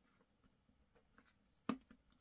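Faint rubbing and squeezing of fingers pressing soft air-dry paper clay into a small silicone mold, with a single sharp click near the end.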